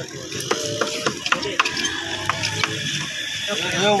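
Hot sand being stirred and scraped in a large iron wok over a wood fire for roasting corn kernels into popcorn, with sharp, irregular clicks throughout.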